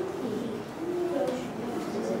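Indistinct chatter of many children talking at once in small groups, no single voice standing out.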